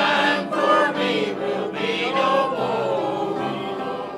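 Mixed church choir of men's and women's voices singing a hymn together.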